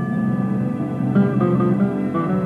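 Guitar concerto music, classical guitar and orchestra playing. The music jumps to full volume at the start, with a run of short plucked notes entering about a second in.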